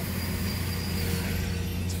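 Steady in-cabin noise of a slowly moving vehicle: a low engine hum under an even hiss.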